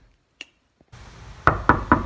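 A brief silence with a single click, then four sharp knocks in quick succession, about a fifth of a second apart, over a faint steady background.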